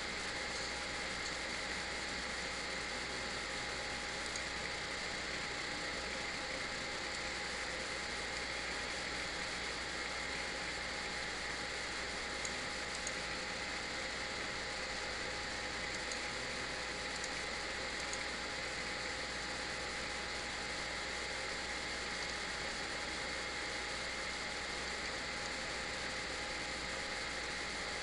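Steady background hiss with a few faint steady hum tones and no distinct sound events: the room tone of the recording.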